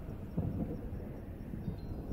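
A low, steady rumble from a TV drama's soundtrack.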